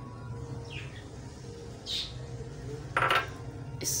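Glass dishes clinking lightly while green chutney is tipped out of one glass bowl into another holding beaten yogurt, the sharpest ringing clink about three seconds in.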